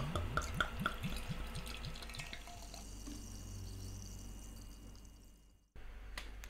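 Liquid dripping: a quick run of drops, about four a second, which thins out and fades away over a few seconds.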